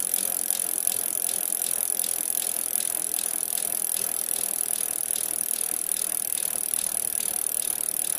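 Bicycle freewheel ratchet ticking rapidly and steadily as the wheel coasts, over a steady hiss.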